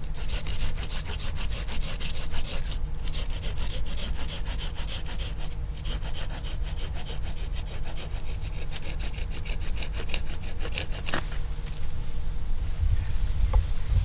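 Hand pruning saw cutting through an old, woody forsythia stem with quick back-and-forth strokes, pausing briefly twice. The strokes stop a few seconds before the end as the stem is cut through.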